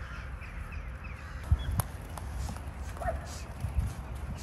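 Wild birds calling, with one short call about three seconds in, over a steady low rumble. Two sharp knocks sound close together midway.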